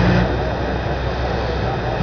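Steady hiss with a low electrical hum from an off-air radio recording; the hum mostly drops out shortly after the start.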